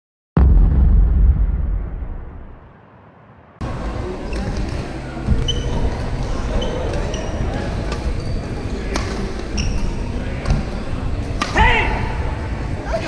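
Badminton rally: rackets striking the shuttlecock in sharp clicks about once a second, with sneakers squeaking on the court floor and a player's shout near the end. Before the rally, a loud low rumble starts suddenly and fades out over about three seconds.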